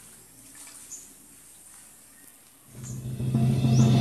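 Faint outdoor ambience, then background music fades in about two-thirds of the way through and swells, carried by steady low tones.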